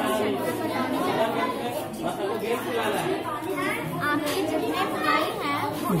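Overlapping chatter of children's voices, several people talking at once with no single clear voice.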